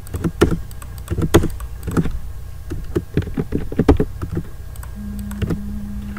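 About a dozen irregular clicks of a computer mouse and keyboard as points are picked and entered in a CAD program, over a low steady hum.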